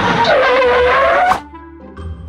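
An edited-in cartoon sound effect, a skid-like screech whose whistling pitch dips and then rises, cutting off suddenly about a second and a half in, over background music.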